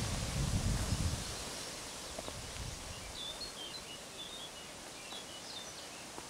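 Quiet woodland ambience with a few short, high bird chirps in the middle. A low rumble of wind or handling fades out in the first second.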